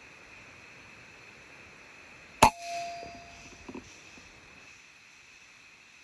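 A single air rifle shot about two and a half seconds in: a sharp crack with a brief metallic ring that fades within about a second, followed by a couple of faint clicks. A steady high-pitched background drone runs underneath.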